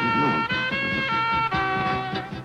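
A liscio dance orchestra playing a polka: a lead line of held notes that change pitch about every half second, over a bouncing band accompaniment.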